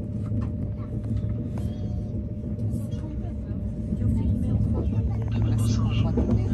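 Steady low rumble of a TGV high-speed train running at speed, heard inside the passenger car, growing a little louder about two-thirds of the way in, with faint voices in the carriage.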